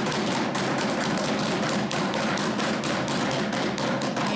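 Many legislators thumping their wooden desks in applause: a dense, steady patter of knocks in approval of a point just made.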